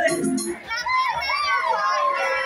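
High voices singing and calling out in a crowd over a music backing track.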